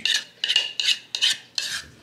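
A utensil scraping thick corn casserole batter out of a plastic mixing bowl into a glass baking dish, in about five short, rasping strokes.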